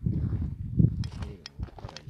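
Footsteps on stony, grassy ground, with several sharp clicks of stones underfoot in the second half, over low rumbling handling noise.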